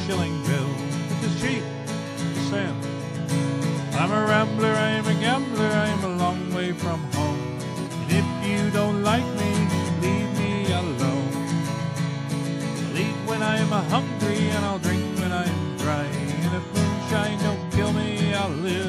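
Country-style acoustic guitar music: a steady strummed guitar with a wavering melody line over it.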